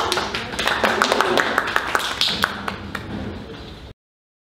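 A small audience clapping, irregular claps mixed with voices, cut off abruptly just before the end.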